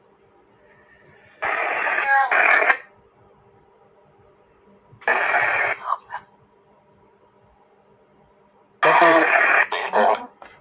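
A ghost box app playing through a phone speaker: three short bursts of garbled, radio-like voice fragments, about a second and a half in, at five seconds, and near the end, with a faint steady hum between them. One fragment is heard by the listener as the word 'boa', his childhood nickname.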